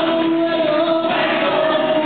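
Live Catholic worship music: many voices singing together, with long held notes.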